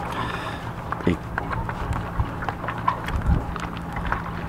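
Fingers pressing along the plastic press-seal of a waterproof tablet pouch to close it: scattered small clicks and rubbing, over a steady low hum.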